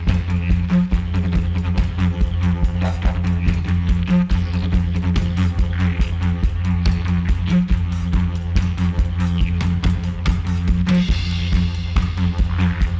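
Background music with a steady driving beat over a low, droning bass.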